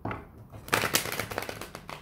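Tarot cards being shuffled by hand: a rapid run of card flicks lasting about a second, starting a little under a second in.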